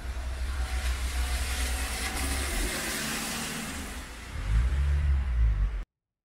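Tyres hissing on a wet road as a car passes, the hiss swelling and fading, followed near the end by a louder low engine rumble that cuts off suddenly.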